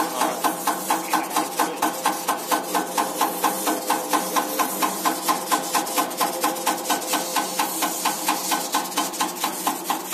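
Electronic unit injector running on an EUS2000L diesel injector test bench, driven by the bench's cam: a steady, even clacking about four times a second, over a constant hum from the bench.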